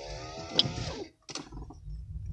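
A faint voice in the first second, then a single sharp click a little past the middle, over the low rumble of a moving car's cabin.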